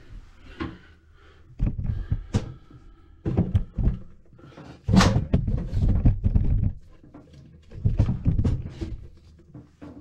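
Camera handling noise as the camera is set down and adjusted close to the floor: four bursts of knocks, scrapes and rustling, the loudest a sharp knock about five seconds in.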